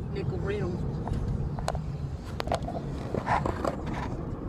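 Steady low rumble of a moving car heard from inside the cabin, with soft laughter and voices and a few light clicks.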